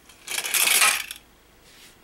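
Hinged plastic roadway section of a toy car track set dropping when its trigger spot is pressed, clattering against the plastic track for about a second.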